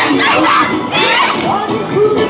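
A large group of voices shouting and calling together over the dance music, the energetic calls of a yosakoi dance team in mid-performance.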